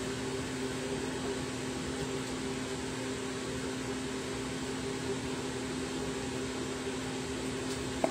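Steady mechanical hum holding one constant pitch, with a low hiss over it, unchanging throughout.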